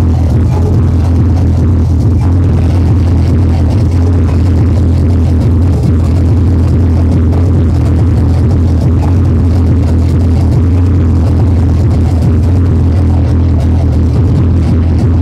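Hardcore techno DJ set playing loud through a club sound system, a heavy, steady bass carrying the mix throughout.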